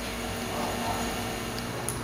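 Steady low hum and hiss of room background noise, with no distinct sound events.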